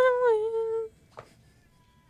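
A voice holding one sung note for about a second, wavering slightly as it ends, followed by faint thin tones.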